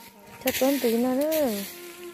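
A person speaking briefly, a short phrase in the middle of the stretch, over a faint steady hum. A single sharp click comes just as the voice starts.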